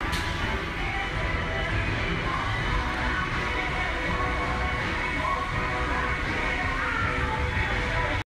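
Background music over a steady murmur of many voices.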